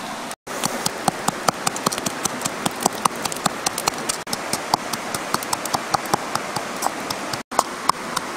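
Wooden pestle pounding salt and chillies in a small bowl: rapid sharp taps, several a second, starting about half a second in and breaking off for a moment near the end, over the steady rush of flowing river water.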